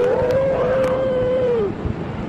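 A young girl crying on a recorded 911 emergency call: one long drawn-out wail on a single held pitch for about a second and a half, dropping off at the end.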